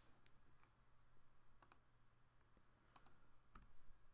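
Near silence with a few faint clicks of a computer mouse and keyboard: two pairs of clicks about a second apart, then a single louder click near the end.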